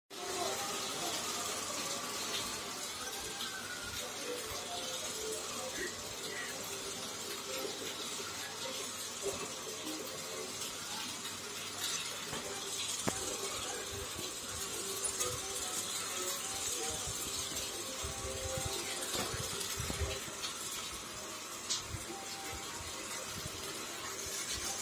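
Faint voices in the background over a steady hiss, with a few light sharp clicks now and then.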